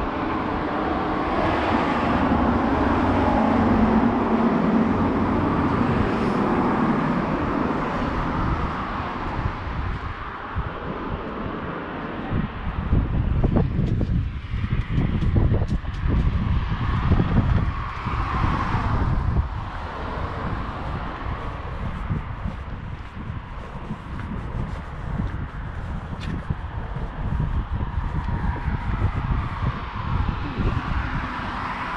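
Road traffic going by, one vehicle swelling and fading over the first few seconds, then wind gusting on the microphone as a heavy, uneven rumble through the second half, with more traffic passing under it.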